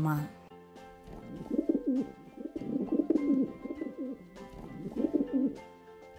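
Pigeon cooing: a run of low, wavering coos that starts about a second in and stops shortly before the end, over soft background music.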